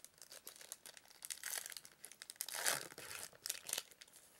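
Yu-Gi-Oh booster pack wrapper crinkling and tearing as a pack is opened, in irregular crackly bursts, the loudest a little under three seconds in.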